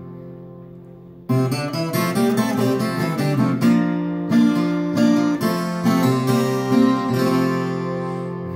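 Viola caipira, a ten-string Brazilian folk guitar, played solo as the instrumental intro to a Folia de Reis song. A chord rings and fades for the first second or so, then the playing picks up about a second in with a steady run of plucked and strummed chords.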